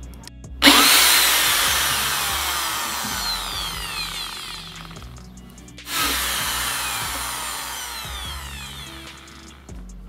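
Corded electric drill boring into a PVC pipe, started twice: each run begins abruptly and loud, then its pitch slides down and the sound fades as the bit bites into the plastic and the motor slows under load.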